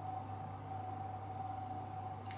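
Room tone: a steady low hum with a faint constant high tone under it, and no distinct event.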